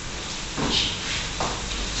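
Chopped onion frying in oil in a pan over low heat, a steady sizzle.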